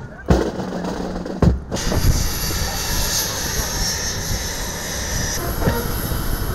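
Heavy beats of a marching honour guard over a low hum, then from about two seconds in the steady rush and high whine of a parked jet aircraft's engines.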